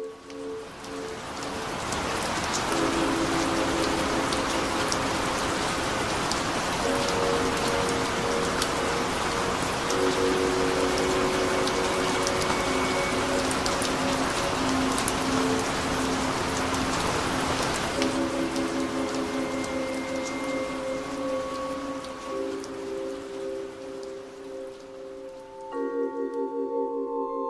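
Steady heavy rainfall that builds up over the first couple of seconds and eases off in the last third, over ambient music of long held tones.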